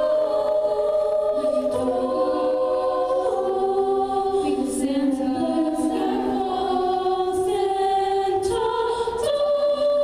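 Treble a cappella vocal ensemble singing in close harmony: held chords whose inner voices shift step by step, moving to a new chord near the end.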